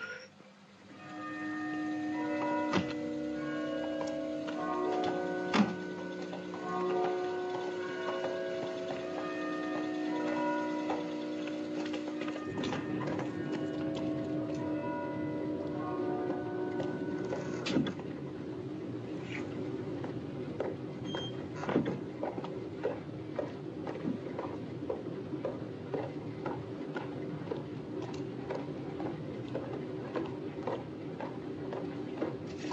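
Soft film-score music with long held notes. From about twelve seconds in, a steady mechanical hum with irregular clicking and clatter takes over, fitting the machinery of a flax-spinning mill.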